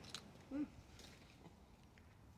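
Mostly near silence, with one brief, faint hum of voice about half a second in from a man chewing a mouthful of cheeseburger.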